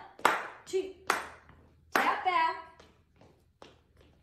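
About seven sharp, irregularly spaced slaps from two women dancing a step routine on a hardwood floor, the loudest ones in the first two seconds. A short voice sounds just after the third loud slap.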